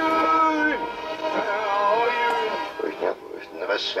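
A 1967 Panasonic RQ-706S reel-to-reel tape recorder playing a half-track recording of radio public service announcements with the tape flipped over, so the voice and music play backwards as garbled, unintelligible sound. There are held tones in the first second, then choppy, wavering voice-like sound.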